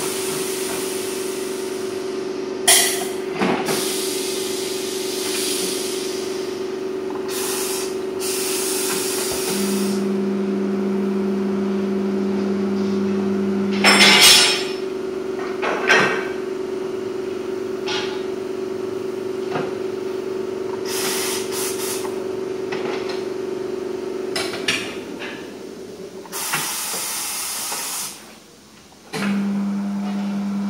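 Air-powered tyre changing machine at work: a steady machine hum, with a lower motor tone running for a few seconds about ten seconds in and again at the very end. Short hisses of compressed air and metal clanks come between, the loudest clank about fourteen seconds in.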